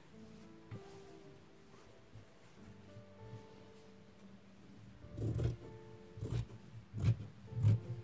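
Soft background music with held notes; in the second half, four crisp cuts of large fabric shears snipping through cotton fabric, about one cut a second, as the selvage edge is trimmed off.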